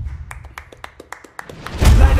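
A quick, slightly uneven run of about a dozen sharp slaps, roughly seven a second, in a lull in the music. A heavy low thump near the end brings the music back in.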